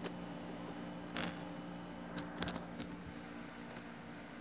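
Handling noise: a few small clicks and taps, one about a second in and a short cluster around two and a half seconds, over a steady low hum in the room.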